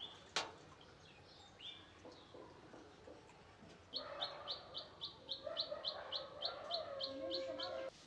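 A bird chirping in a quick, even series of short high notes, about four a second, starting about halfway through, with fainter lower calls beneath. The first half is faint.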